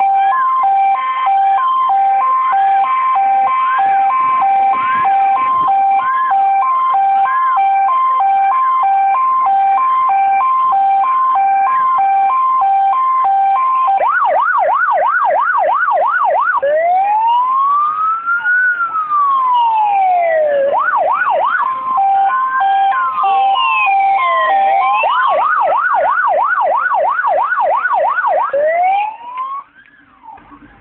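Fire-engine sirens sounding together. First comes a steady two-tone hi-lo siren with a slower yelp under it. About halfway through it changes to fast yelping and a slow rising-and-falling wail. The sirens cut off about a second before the end.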